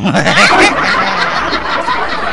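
Loud laughter, peaking about half a second in.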